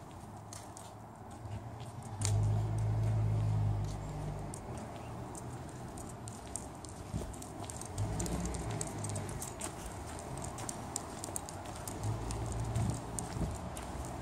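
Handheld camera on the move outdoors: low rumbles of wind and handling on the microphone come in three spells, the first about two seconds in and the loudest. Faint irregular clicks like footsteps run underneath.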